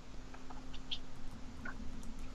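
A few faint, scattered clicks from a computer keyboard and mouse being used during a lull in a call, over a steady low electrical hum.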